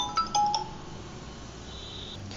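Two short bell-like chime notes, a third of a second apart, in the first half second, then only a faint steady hiss.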